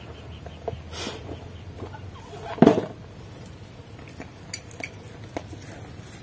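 Yardlong beans being handled and gathered into a bundle by hand: scattered light rustles and small clicks as the pods are shifted and straightened. One short, louder call-like sound stands out about two and a half seconds in.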